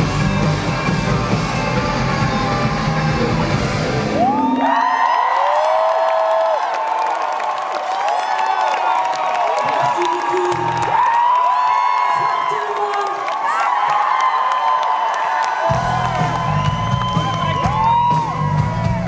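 Rock band playing live, heard from the audience, stops about four seconds in. The crowd then cheers and whoops for about eleven seconds before the band's full sound with bass and drums comes back in near the end.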